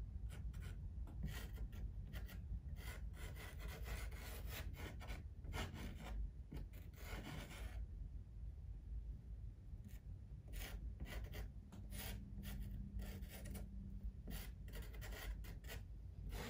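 Soft pastel stick scratching and rubbing on textured pastel paper in many short, irregular strokes, faint, with one longer stroke about seven seconds in.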